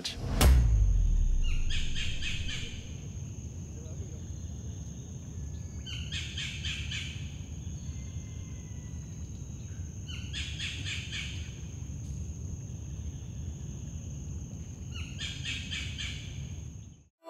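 Tropical rainforest ambience: a rapid trilling call repeats four times, about every four to five seconds, over a steady high-pitched insect-like whine. A low rumble runs underneath and is strongest in the first couple of seconds.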